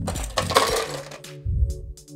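Ice tipped out of a wine glass that was chilling it: a short clattering rush of ice about half a second in, with a few light glass clinks after it. Background music plays underneath.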